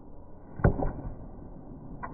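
Wooden cricket bat hitting a tennis ball: one sharp crack about two-thirds of a second in, followed at once by a fainter knock.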